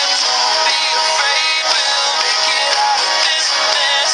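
Music: a pop-country song with a sung vocal line over a steady band backing.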